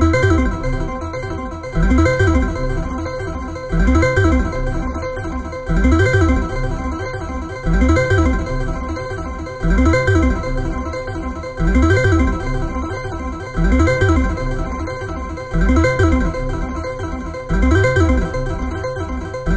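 Synthesizers.com modular synthesizer playing quantized notes from a Q171 quantizer bank driven by a triangle LFO, over sustained tones. The note pattern repeats about every two seconds, each cycle opening with a loud note.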